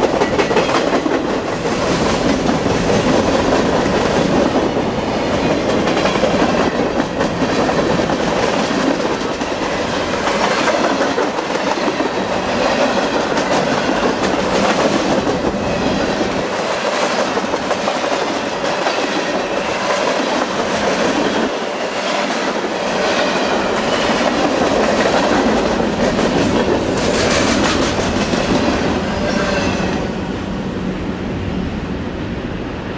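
CSX freight train's boxcars rolling past close by, steel wheels clattering in a regular clickety-clack over the rail joints along with a steady rumble. The sound drops off at the very end as the last car clears.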